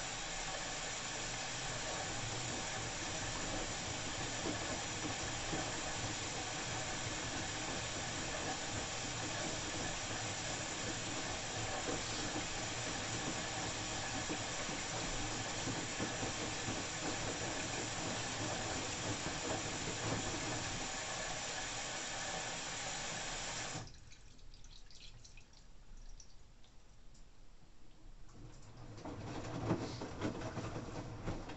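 LG 9 kg Inverter Direct Drive front-loading washing machine filling for its first rinse: a steady rush of water coming in through the inlet, which cuts off suddenly about four-fifths of the way through. After that the quieter slosh of wet laundry tumbling in the drum is left, growing louder near the end.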